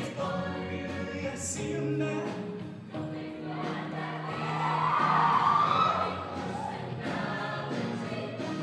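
Mixed show choir singing with live instrumental accompaniment under a steady bass line, swelling to its loudest a little past the middle.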